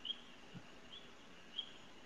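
Faint, short high-pitched chirps, three of them less than a second apart, each a brief note that hooks upward, over quiet room tone.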